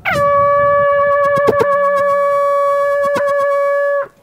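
Hunting horn blown in one long held note that slides down into pitch at the start, holds steady for about four seconds with a couple of brief wavers, and cuts off suddenly.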